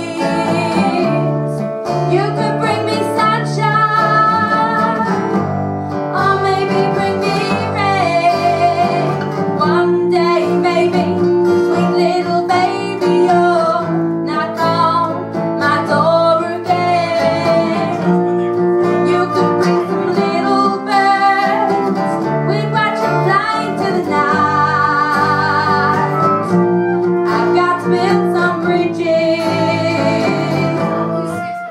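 Live acoustic folk music: a flute carries an ornamented melody over two strummed acoustic guitars.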